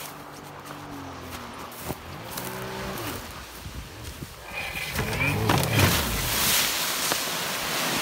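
An ATV engine running steadily, then revving up and growing louder as the quad ploughs through floodwater toward the listener, with a loud rushing noise over the last couple of seconds.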